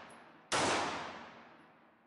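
A 9mm Smith & Wesson Model 915 pistol fired once about half a second in, a sharp report followed by a long echoing decay in an indoor range. The fading tail of the previous shot is heard at the start.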